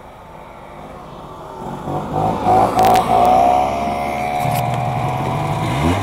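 Snowmobile engine accelerating. It is quiet at first, grows much louder about two seconds in and then runs steadily, with its pitch rising again near the end.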